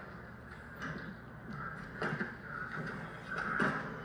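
Programme sound playing at low volume through a Sony Bravia LCD television's built-in speakers: faint, indistinct sounds with a couple of short louder moments about two seconds in and near the end.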